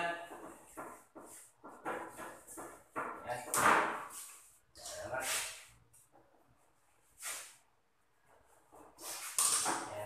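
Irregular bursts of scraping and rustling from electrical wires being handled and pulled in a breaker panel, mixed with indistinct voice-like sounds.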